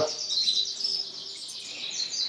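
Canaries in their breeding-room cages singing, a quick run of short, high, repeated chirping notes.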